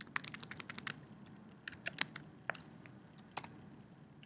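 Computer keyboard keystrokes entering a terminal command: a quick run of key clicks in the first second, then a few separate key presses spread through the rest.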